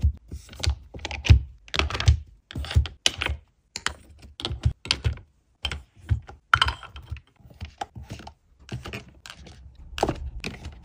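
Makeup containers (a glass foundation bottle, square compacts and foundation tubes) set down one after another into a padded makeup case with dividers: a run of irregular clicks and soft knocks, about two a second.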